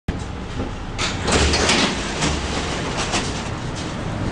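Interior noise of a New York City Subway 4 train car running on elevated track: a steady low rumble with irregular rattles and clatter, loudest from about a second in and again around three seconds.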